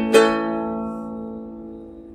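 A Gretsch guitalele's final chord: one last strum just after the start, then the chord ringing on and slowly dying away as the song ends.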